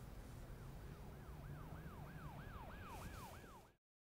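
Faint emergency-vehicle siren in fast yelp mode, its pitch sweeping up and down about three to four times a second over a low rumble. It grows louder over the first few seconds, then cuts off abruptly near the end.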